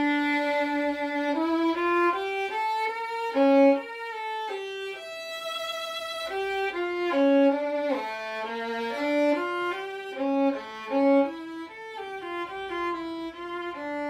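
Solo violin bowing a slow melody, one note at a time, each note held for up to a second or so.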